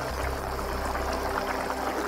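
Mapo tofu sauce simmering in a nonstick pan: a steady bubbling with many small pops, over a steady low hum.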